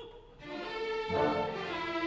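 Opera orchestra playing: after a brief lull, the strings come in with sustained chords about half a second in, and a low bass joins about a second in.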